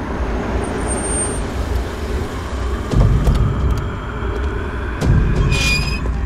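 A car's engine and tyres rumbling low as it rolls slowly up a lane. The rumble swells about three seconds in and again about two seconds later, and a short high squeak comes near the end.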